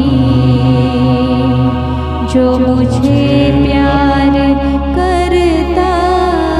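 A woman and a man singing a slow Hindi Christian worship song in long, held notes, over sustained low accompaniment notes that change every couple of seconds.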